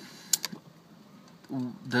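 Two short, sharp clicks in quick succession, a third of a second and half a second in, over quiet room tone.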